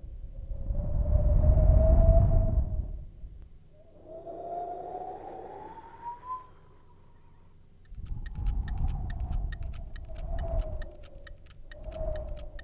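Title-sequence sound effects: low rumbling swells under a wavering tone that glides up and down, rising to a peak about six seconds in. From about eight seconds in, a rapid clock-like ticking, about five ticks a second, runs over a second rumble.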